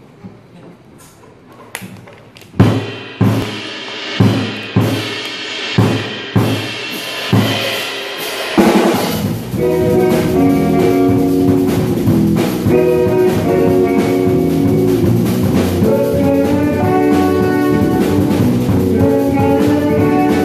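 Jazz-fusion band with drum kit, electric bass, guitar, keyboards and tenor saxophone starting a tune. A few light clicks lead into a run of about ten loud accented hits, each about half a second apart. About eight seconds in, the full band launches into the tune, with the tenor saxophone carrying the melody over drums and bass.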